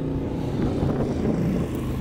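A 1954 Harley-Davidson KH's 55 cubic-inch flathead V-twin idling steadily with a low, even hum.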